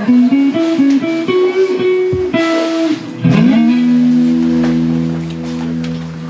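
Live electric guitar and bass playing a run of single plucked notes that step upward in pitch. About three seconds in, a note slides up and is held, ringing out and slowly fading.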